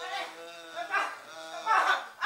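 A person's voice making long, drawn-out pitched sounds with no clear words, swelling louder near the end.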